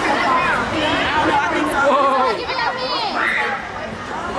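Several young people talking over one another in lively chatter.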